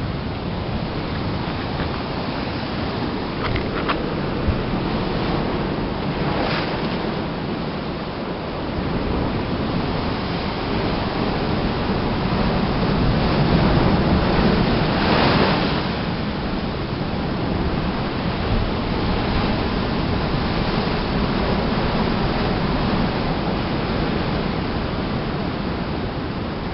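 Heavy ocean surf breaking and washing over rocks in a steady rush, swelling to its loudest with a close crash about halfway through. The waves are big enough to make passage along the shore dangerous.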